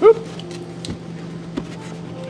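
A short "oop" from a voice at the start, then a cardboard cake box being opened by hand: a few faint scuffs and taps over a steady low hum.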